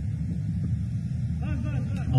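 A pause between phrases of a man's speech over a loudspeaker system. A steady low rumble fills the gap, and a faint voice is heard briefly about one and a half seconds in.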